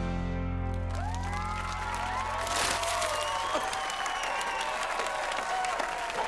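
A pop song's final sustained chord rings out and fades over the first second or so, then a studio audience claps and cheers with rising-and-falling whoops.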